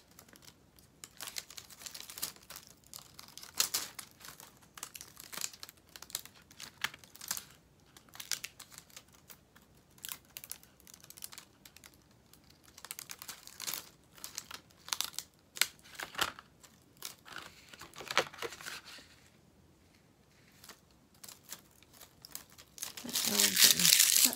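Crumpled aluminium foil crinkling in the hands in irregular crackles, mixed with sticky vinyl scraps being picked and peeled off the backing during weeding. A longer, louder rustle comes just before the end.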